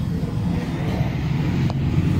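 Steady low hum of an engine running.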